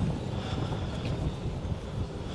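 Wind buffeting an unshielded camera microphone: an irregular, gusty low rumble.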